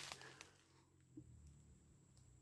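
Near silence, with two faint ticks.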